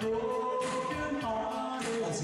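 A man singing into a microphone over music with a regular beat, with long held notes.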